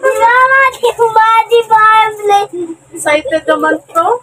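A young child singing a tune in a high voice, with long held notes and a short break a little past the halfway point.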